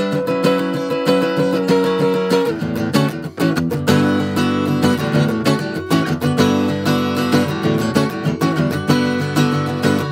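A 1966 Gibson J-45 flat-top acoustic guitar played solo: a held, ringing chord for the first couple of seconds, then after a short break a busier passage of quick notes and strummed chords.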